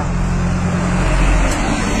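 A motor vehicle engine running steadily, a low hum under a noisy outdoor background; its higher hum line stops about halfway through.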